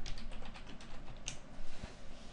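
Computer keyboard being typed: a quick, even run of about eight key clicks as a password is entered, followed by a sharper single click about a second and a half in.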